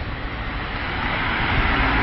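Road traffic noise from a vehicle coming along the road beside the sidewalk, a rushing engine-and-tyre sound that grows steadily louder as it approaches.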